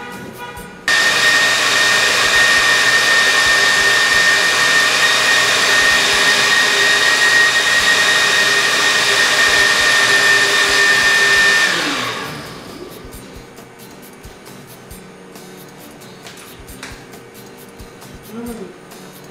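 Countertop blender switched on about a second in, running at a steady high speed with a high whine for about eleven seconds while blending a pineapple-juice and coconut smoothie, then winding down. Light clicks and knocks follow as the jug is handled.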